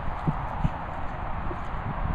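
A few soft, uneven thumps, like footsteps on grass, over a steady rushing noise.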